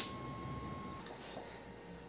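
Quiet room tone in a small room, with one sharp click at the very start and a faint steady high whine that stops about a second in.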